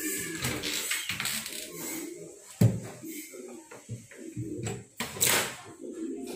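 Indistinct low talking close to the microphone, with handling noise: a sharp knock about two and a half seconds in and a short rustling hiss about five seconds in.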